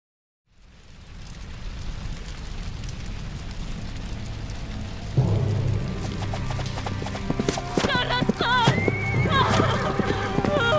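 Cartoon soundtrack: a low rumble fades in and builds, then about five seconds in a sudden hit brings in low, sustained music. In the last few seconds horses neigh and hooves clatter over the music.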